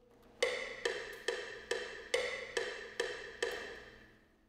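A pitched percussion sample playing a short knocking hit eight times at an even pace, a little over two hits a second. The first and fifth hits are accented.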